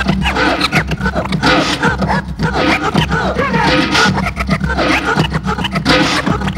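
Vinyl scratching on Technics turntables: a record pushed back and forth by hand in quick rising and falling swipes, chopped on and off by the mixer's crossfader, over a steady bass-heavy beat.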